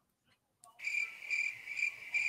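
A cricket chirping in a steady, even rhythm of about two chirps a second. It starts just under a second in, after a moment of silence.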